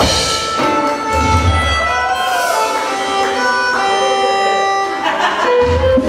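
Live band jamming: drum kit, keyboard and guitar under a held lead melody that wavers and bends in pitch, opening on a cymbal crash.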